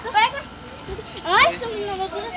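Rottweiler puppies yelping: a short high cry just after the start and a longer, sharply rising cry about a second later.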